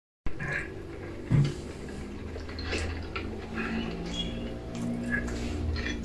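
Quiet film soundtrack played through a television: faint low sustained tones and scattered small sounds, with one short thump about a second and a half in.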